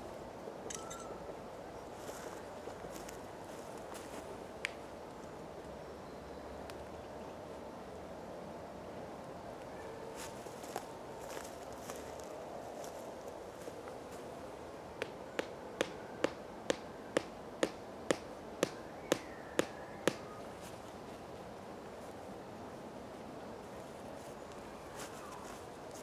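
A tent peg being hammered into the ground to stake down a tarp corner: a run of about a dozen sharp knocks, roughly two a second, starting a little past halfway.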